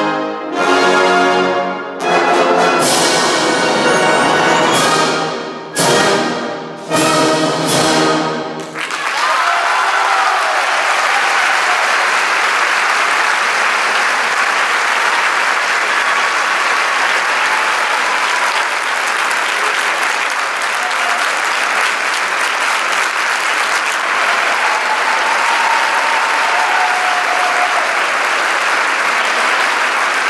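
Large symphonic wind band, with brass, clarinets and saxophones, plays its closing chords: several loud, brass-heavy chords separated by short breaks, ending about nine seconds in. Sustained applause from the audience follows at an even level.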